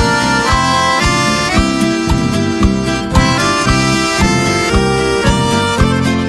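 Piano accordion playing a quick instrumental chamamé melody of short, fast-changing notes, over a band's steady low beat.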